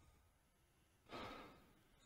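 Near silence, with one faint breath or sigh a little past halfway through.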